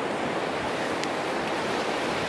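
Steady rush of ocean surf breaking on a beach, with wind on the microphone.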